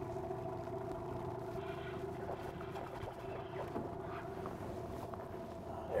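Small outboard motor running steadily at low speed, a constant hum with a low rumble beneath it.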